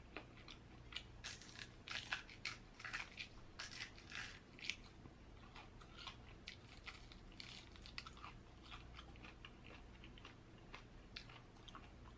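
Chewing crunchy fried chicken wings: a run of short, crackly crunches, thickest in the first five seconds, then thinning to softer, sparser chewing.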